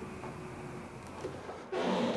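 A quiet, steady background hum with a few faint light clicks.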